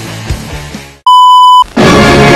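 Music fading out, then a single loud electronic beep held at one steady pitch for about half a second, followed near the end by loud music starting abruptly.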